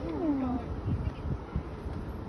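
A person's short, wavering vocal cry, falling in pitch over about half a second at the start, like a sob or a drawn-out "aww", over a low rumble.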